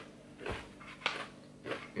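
A person chewing a chocolate-covered pretzel with her mouth closed: three brief, soft crunches about half a second apart.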